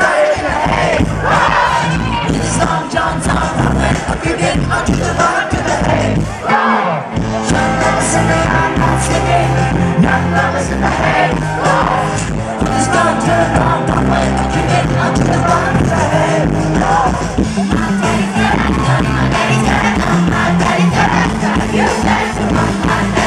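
A rock band playing live: electric guitars, bass and drums with singing over them, and crowd noise underneath.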